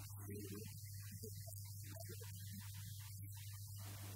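Steady low electrical mains hum on the microphone feed, with faint, broken traces of a man's voice on the handheld microphone above it.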